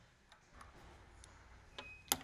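Near silence with a few faint light clicks of small metal hand-press dies being handled. Near the end comes one small metal clink with a brief ring.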